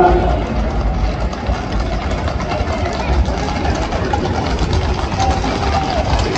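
Hooves of a close pack of galloping Camargue horses clattering on an asphalt street, heard as a constant low rumble with irregular clatter, under the voices of a crowd.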